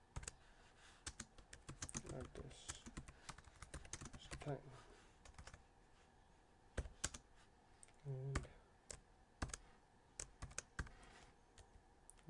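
Typing on a computer keyboard: irregular runs of quick keystrokes as a line of code is entered.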